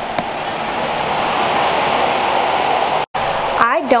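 Steady rushing wind, growing slightly louder, cut off suddenly about three seconds in. A woman laughs near the end.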